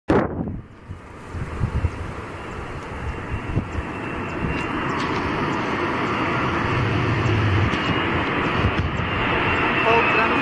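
Airbus A380 on final approach, its four jet engines making a steady rushing noise that grows louder as the airliner nears, with a thin high whine on top. A few low thumps come in the first two seconds.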